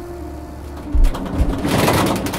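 Trailer sound design: a low steady drone with two deep thuds about a second in, then a rising whoosh that swells near the end.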